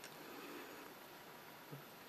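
Near silence with faint tobacco-pipe puffing: a soft draw on the stem, then one small lip pop about three quarters of the way through.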